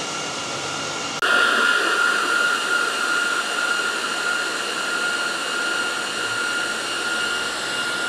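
Dell PowerEdge R740 server's cooling fans running flat out: a steady rushing noise with a high whine, suddenly louder about a second in. The fans are not throttling down as they normally should, which the owner suspects is a motherboard or front temperature-sensor fault.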